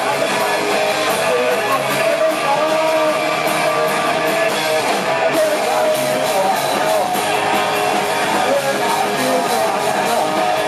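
Live rock band playing a song loudly, led by guitars.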